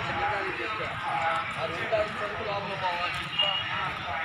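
People talking, with footsteps on a paved road.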